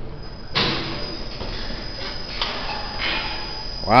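Overhead assembly-line hoist starting up about half a second in and running steadily as it lifts a car body off its chassis, with a couple of faint clicks.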